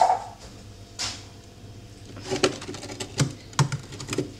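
A short loud burst at the start and a breathy rush about a second in, then a run of irregular light taps and clicks: a hand handling a hard, burnt bread roll against a hard ledge.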